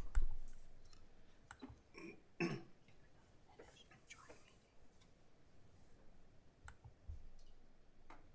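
Hushed meeting room with scattered sharp clicks, a few brief soft murmured voices, and a low thump near the end.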